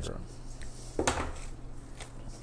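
Metal floral cutters snipping flower stems and clacking, with one sharp metal click about a second in.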